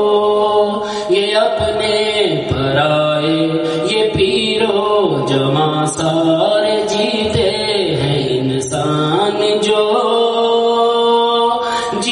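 A solo male voice sings an Urdu devotional recitation into a microphone. He draws out long melismatic notes that glide up and down between held pitches.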